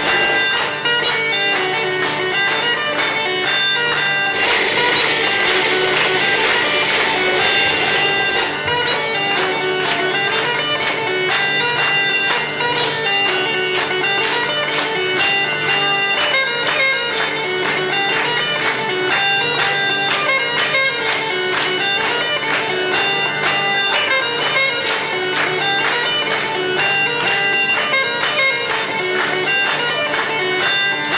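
Belarusian bagpipe (duda) playing a folk melody over a steady, unbroken drone.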